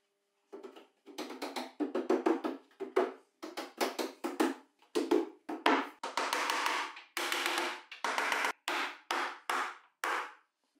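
A mallet knocking a glued plywood frame part down onto the cabinet modules, with irregular sharp knocks a few times a second. Two longer scraping sounds come about six and seven seconds in, like wood sliding on wood as the frame is worked into place.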